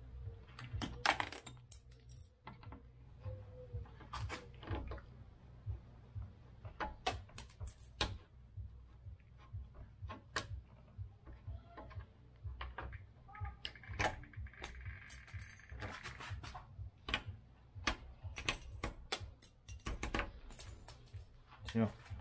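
Irregular small clicks and scrapes of fishing line and a small hand tool working under plastic badge letters stuck to a car's trunk lid, cutting through the adhesive to pull them off.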